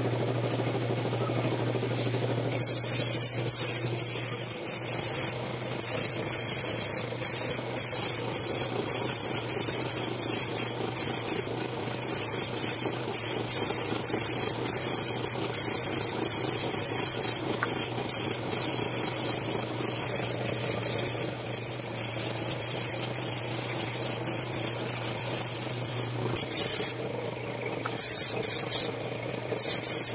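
Gravity-feed spray gun spraying a clear wood finish in repeated bursts of hiss, a second or two each, as the trigger is pulled and released. A steady low hum runs underneath and stops near the end.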